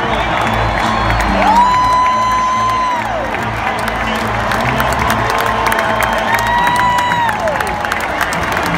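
Intro music played over stadium loudspeakers with a deep pulsing beat, over a cheering crowd. Two long high tones slide up, hold and fall away, about a second and a half in and again near the end.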